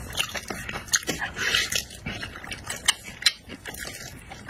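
Close-up mouth sounds of biting and chewing a sticky, sauce-glazed piece of meat: a run of sharp wet clicks and smacks, with a longer wet suck about a second and a half in.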